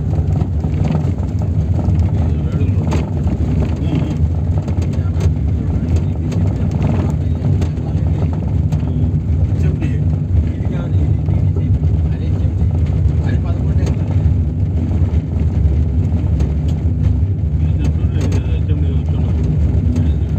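Steady low rumble of a car's engine and tyres on an unpaved road, heard from inside the cabin.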